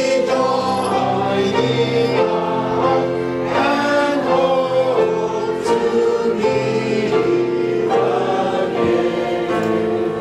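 Church congregation singing a hymn together, many voices holding long notes.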